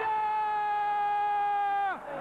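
A football commentator's excited shout, one long high vowel held steady for about two seconds that then drops off sharply.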